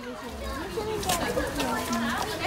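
Young children's voices talking and calling out over each other, without clear words.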